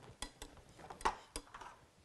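Roll-up aluminium slatted table top being picked up and lifted, its slats clinking together in a few light, sharp metallic clicks.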